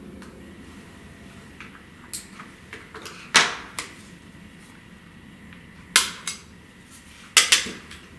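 Sharp clicks and knocks of a Philips DCC 175 portable cassette player being handled and its back plate taken off and put down, a few separate strikes with the loudest about three and a half, six and seven and a half seconds in.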